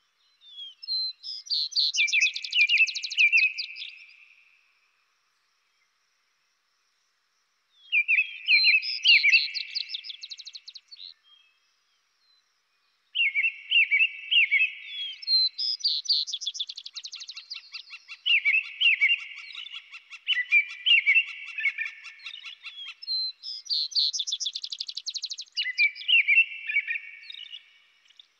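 Vesper sparrow and American robin singing: phrases of slurred notes running into higher trills. After the first two phrases there are pauses of a few seconds, then songs follow one another without a break through the second half.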